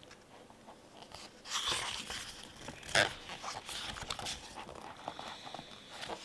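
Paper pages of a large activity book being turned by hand, rustling in irregular bursts, with the sharpest page flip about three seconds in.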